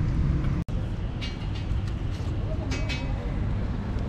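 Steady low rumble of street traffic, with faint voices in the background. The sound drops out for an instant just under a second in.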